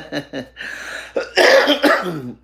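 A man laughing in short bursts, then coughing hard near the end; the cough is the loudest sound.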